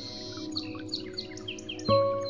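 Calm background music of held tones, with birdsong over it: a quick series of short falling chirps. A new note strikes near the end.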